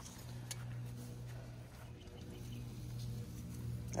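A faint steady low hum, with a couple of light ticks.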